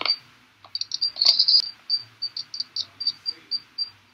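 A run of short, high chirps, several a second at an even pace, loudest about a second in.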